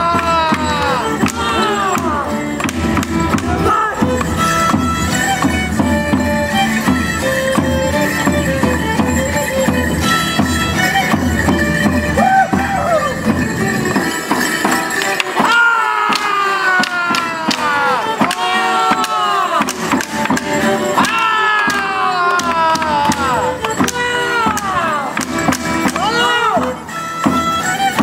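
A border Morris dance tune played live, with the dancers' wooden sticks clacking. The dancers give long group shouts that fall in pitch, at the start and twice in the second half.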